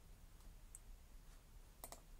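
Near silence, then a computer mouse button clicking near the end, a quick double click.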